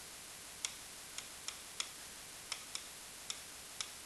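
Interactive whiteboard pen tip clicking against the board as numbers are written: about eight short, sharp ticks at uneven intervals over faint hiss.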